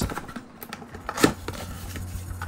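A cardboard Kinder Surprise box being handled and its end flap pulled open: light rustling and small clicks of card, with one sharper tap about a second and a quarter in. A faint steady low hum sits underneath.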